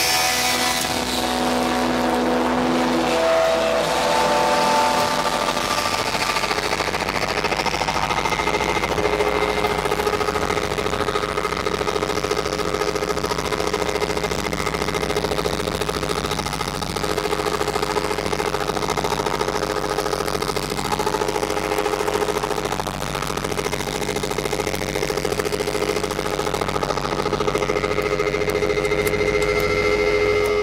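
A live rock band's electric guitars held in a loud, distorted wash of feedback and droning tones, with several notes sustained over a dense noise: the drawn-out noisy ending of the closing song.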